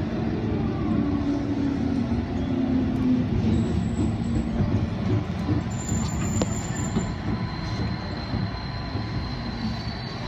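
JR Osaka Loop Line electric commuter train running alongside a station platform, heard from inside the carriage: a dense, steady low rumble of wheels and running gear that eases slightly toward the end as the train slows into the station. A thin high steady tone comes in about three-quarters of the way through.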